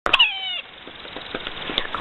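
Large woodpecker on a pine trunk: two sharp knocks, then a single nasal call that falls in pitch over about half a second, followed by a few faint taps.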